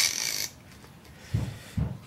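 Metal handbrake lever parts sliding together as a piece is fed into the lever: a short scrape at the start.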